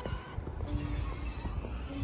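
Background music with short sustained notes and a few sliding tones, over a steady low rumble of wind on the microphone.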